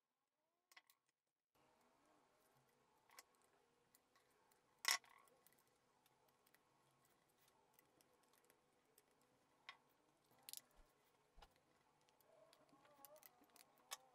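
Near silence broken by a few faint clicks and taps from a screwdriver and the plastic housing of a socket strip as wires are screwed into its terminals. The sharpest click comes about five seconds in, with a small cluster of light taps near the end.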